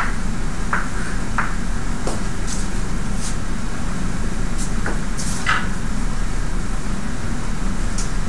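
Steady low room hum with scattered short taps and scrapes of chalk writing on a blackboard.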